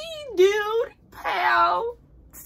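A woman's voice in a high, whiny mock-crying wail: two drawn-out, wavering cries without clear words.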